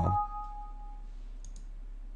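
A faint Windows dialog chime, two steady tones sounding together for about a second as a delete-confirmation box opens, then a quick pair of faint mouse clicks about one and a half seconds in, over a low electrical hum.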